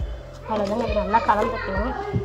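Children's voices talking, starting about half a second in, over a low steady hum.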